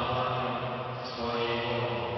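Slow sung worship chant: a voice holding long, steady notes, with a new phrase starting about a second in.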